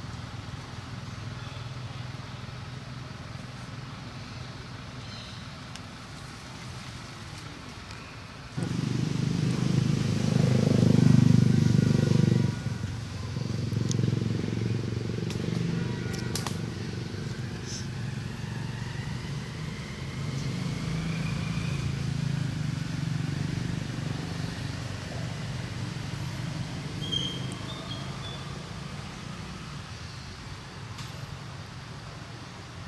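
A motor engine drones steadily in a low hum. It gets abruptly louder about eight and a half seconds in for about four seconds, then settles back to a steady running level.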